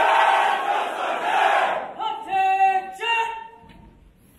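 Many voices shouting together at once for about two seconds. Then a single voice calls out long, drawn-out shouted commands in the manner of a drill sergeant, in a large hall.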